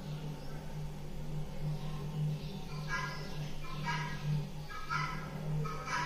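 A steady low hum, with a few faint, short pitched sounds in the background about three, four and five seconds in.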